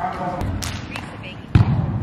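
A volleyball being struck, with a few light knocks in the first second and one loud thud about one and a half seconds in that rings on briefly in a large gym.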